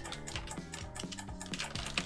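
Computer keyboard keys being typed, a run of separate clicks, over quiet background music.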